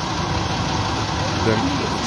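Fire truck engine idling steadily beside the microphone, a low even rumble.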